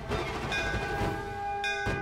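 Hanging brass temple bell rung by hand: struck at the start and again just before the end, with its ringing tones held between the strikes.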